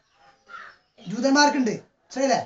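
Speech only: a short pause, then a person's voice for about a second.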